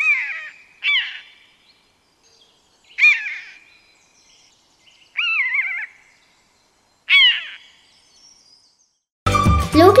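Common buzzard calling: five high, whistled calls a second or two apart, each gliding down in pitch. The fourth call is longer and wavers.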